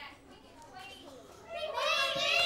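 A group of young children calling out eagerly at once, several high voices overlapping, rising sharply about one and a half seconds in over quieter classroom chatter.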